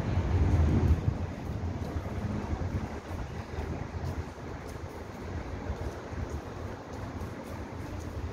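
Low rumble of wind buffeting the microphone over outdoor background noise, loudest in the first second and then settling steady.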